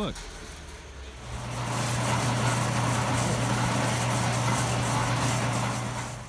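A motor running steadily: a low hum with a rushing noise over it. It comes up about a second in and stays level until near the end.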